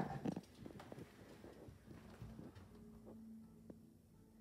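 Faint, scattered footsteps and light knocks on a hardwood floor as people walk through a wood-panelled hallway.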